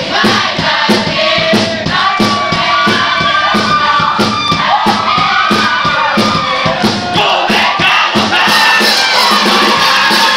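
Live pop-rock band with electric bass and drum kit playing an upbeat song, several voices singing over a steady fast drum beat, with crowd noise from the audience.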